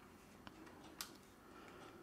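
Near silence with two faint clicks, the second sharper, about half a second and a second in: the Panasonic GH5's articulating rear screen being pulled out and swung open.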